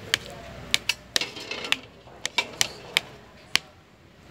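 A metal spoon clicking against a bowl as it cuts through and turns diced avocado: about a dozen sharp, irregular clicks.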